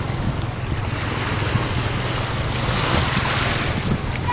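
Small sea waves washing onto a pebble shore, with wind buffeting the microphone as a steady low rumble under the hiss of the surf.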